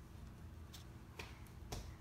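Three faint, short clicks about half a second apart, from a pencil tip tapping on a paper worksheet.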